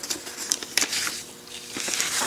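Sheets of paper rustling and crinkling as printed pages are handled and turned, a series of short crackles that bunch up in the first half and again near the end.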